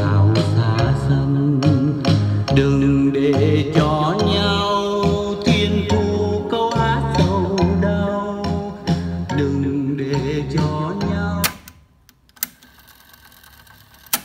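A song playing back from a cassette on a Pioneer CT-6 tape deck through loudspeakers. It cuts off suddenly about 11.5 seconds in, followed by a couple of sharp clicks from the deck's piano-key transport buttons.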